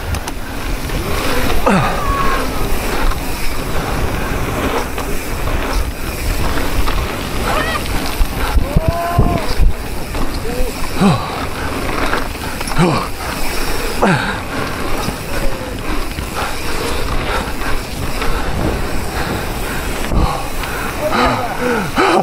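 Mountain bikes ridden fast over a dirt track: tyre rumble under heavy wind noise on the rider-mounted camera's microphone, with several short shouts from the riders scattered through it.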